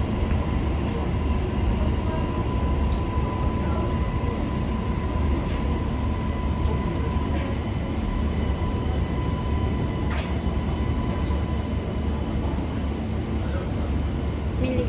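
Metro train running, heard from inside the car: a steady low rumble with a thin steady whine over it for the first half and a few faint clicks.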